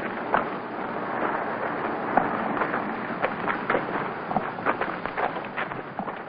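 Boots of a squad of soldiers marching on a dirt parade ground: many scattered, irregular crunching steps over the steady hiss of an old film soundtrack.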